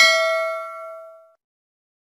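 A bell-like ding sound effect rings out with several clear ringing tones and fades away within about a second and a half.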